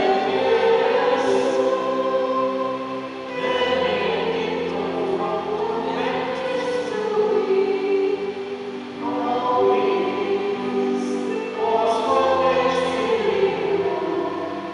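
Choir singing a church hymn in sustained phrases a few seconds long, with brief breaths between them.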